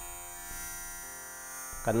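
A faint, steady hum fills a pause, then a man's voice starts chanting near the end.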